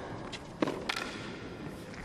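Tennis ball struck by rackets and bouncing on a hard court during a rally: a few sharp knocks, the loudest about half a second in, over a low arena hush.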